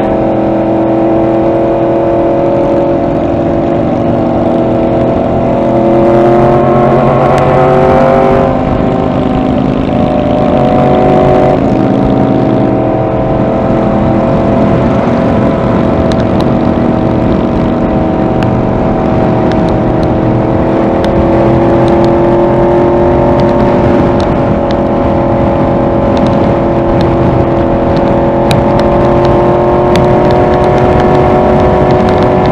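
Yamaha R1 sport bike's inline-four engine running at highway cruising speed, heard from on the bike along with wind and road noise. Its pitch climbs slowly twice as the bike speeds up, with a brief drop in between.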